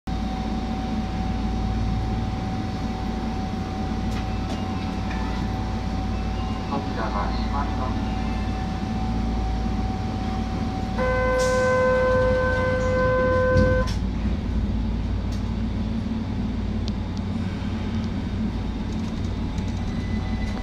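Keihan 800 series subway train standing at an underground platform: a steady low hum from the train with a thin steady whine. About eleven seconds in, a loud buzzer sounds for about three seconds, the warning before departure.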